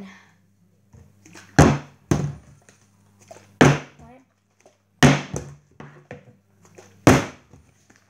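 A partly filled plastic juice bottle being flipped and landing on a table: five sharp thuds, a second or two apart.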